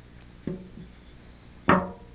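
A person's short voiced sound near the end, like a hesitant 'uh', with a fainter one about a quarter of the way in, over a low steady electrical hum.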